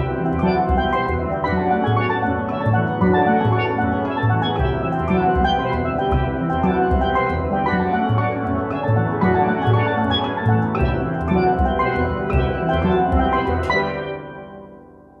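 Steel pan ensemble, bass pans included, playing a busy passage with a pulsing low bass line under rapid struck notes from the higher pans. It closes on a loud final hit right at the end.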